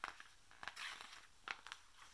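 Faint rustle of a picture book's paper page being turned, a few soft clicks and a short swish just under a second in.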